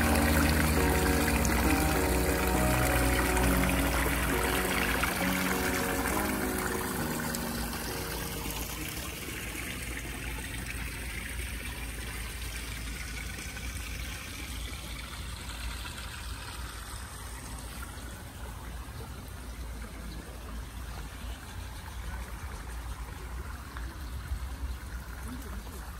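Background music fades out over the first several seconds, leaving the steady splashing trickle of water running from an outlet pipe into a rock-edged pond.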